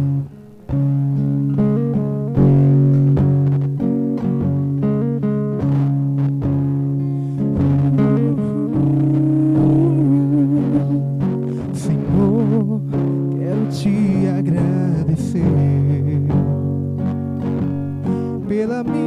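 Acoustic guitar playing the introduction to a slow gospel song, over a held low bass note. In the middle a wavering melody line with vibrato rises above the chords.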